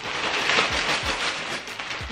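Plastic mailer bag crinkling and rustling as it is shaken upside down to empty it, with plastic-wrapped clothes sliding out and soft low thumps as the items drop.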